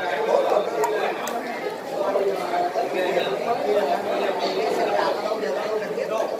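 Steady background chatter of several people talking at once, with no single voice standing out.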